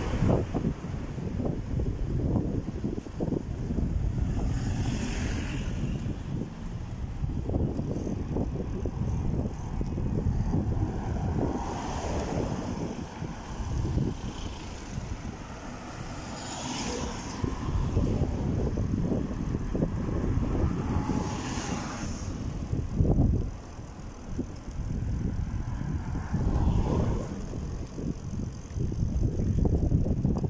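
Wind buffeting a phone's microphone, an uneven low rumble, on a quiet street with a small pickup truck driving past about halfway through.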